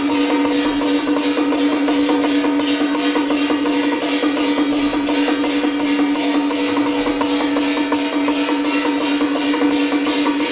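Temple procession music: a steady held tone over a fast, even beat of light percussion strikes, about three to four a second.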